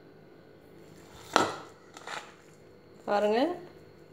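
A metal spoon knocking against a steel mixing bowl while tossing spice-coated cauliflower florets: one sharp clack with a brief ring about a second and a half in, then a couple of lighter clinks.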